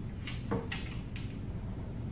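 A few short plastic clicks and slides from a fiber-optic connector being handled at a fiber inspection probe, four in about a second.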